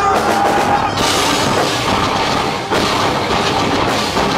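Progressive metal band playing live at full volume, without vocals: distorted electric guitars, drums and keyboards in a dense, loud wall of sound, with a brief break about two-thirds in.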